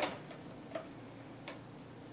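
Plastic toys handled by a baby: the end of a knock as a plastic basket is set down, then two light plastic clicks of toy blocks, the first a little under a second in and the second about a second and a half in.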